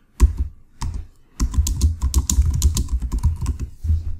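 Typing on a computer keyboard: a couple of separate keystrokes, then a fast run of keystrokes from about a second and a half in.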